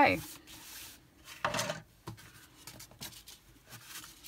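Hands rubbing and pressing cardstock layers together, then handling the card on a craft mat, with a short scraping rustle about one and a half seconds in and a few light taps.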